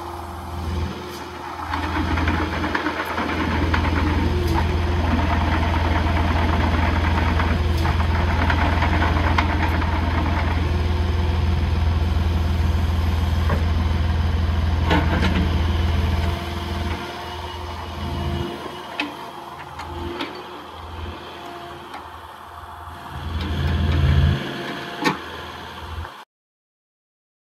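Kubota KX080-4 midi excavator's four-cylinder diesel engine running. It grows louder a few seconds in and holds steady, drops back to a quieter idle about 16 seconds in, and swells briefly again near the end.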